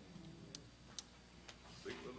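Near-quiet room with three faint, sharp clicks about half a second apart. A voice begins near the end.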